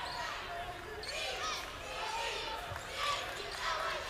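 A basketball being dribbled on a hardwood court amid the steady noise and voices of an arena crowd.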